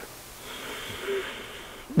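A man breathing out slowly through a long, soft exhale lasting about a second and a half, as he pulls the navel in toward the spine in the Agni Sara yoga breath.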